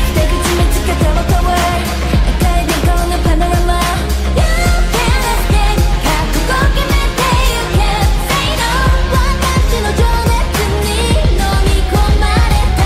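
K-pop dance track with female group singing over a steady, heavy beat and deep bass, mixed as 8D audio that pans around the listener.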